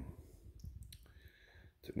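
A few faint clicks of a metal spoon against a ceramic soup bowl as the bowl and spoon are handled.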